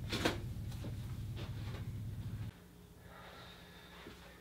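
A few soft taps and rustles of a person moving off over a low room hum. About two and a half seconds in the hum drops suddenly to a quieter, steadier room tone.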